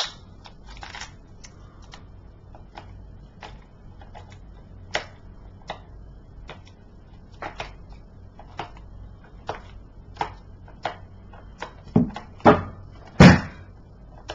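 Fingernails picking at the top seal sticker on a plastic DVD case: scattered light clicks and scratches, with a few louder knocks near the end.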